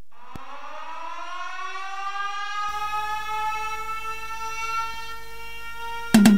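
A siren-like tone winds up in pitch over the first two to three seconds and then holds steady, opening a song before the drums come in. A low hum joins about halfway through.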